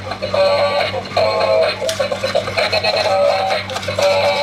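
Dancing monkey toy playing its built-in electronic tune through its small speaker: a short melody repeating about once a second.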